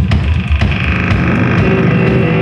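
Experimental noise-rock band playing live on drums and electronics: heavy low bass and drums, with steady electronic drone tones coming in about half a second in.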